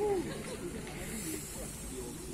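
Several people's voices chatting in the background, none of them close, with a soft high hiss in the middle.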